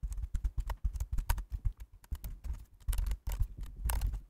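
Computer keyboard typing: a quick, uneven run of key clicks.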